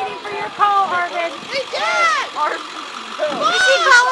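Excited, high-pitched voices calling out without clear words, with two long rising-and-falling whoops, one about two seconds in and one near the end.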